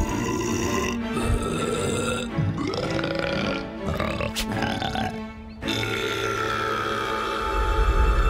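Cartoon character burping and grunting over background music. Near the end, a loud, low swell of dramatic music comes in.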